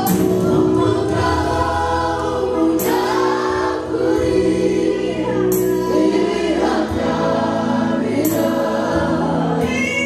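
Church worship team singing a gospel praise song together, led by singers on microphones over a group of voices.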